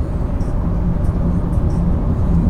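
Car engine and tyre road noise heard inside the cabin while cruising at about 40 mph: a steady low drone with a faint hum.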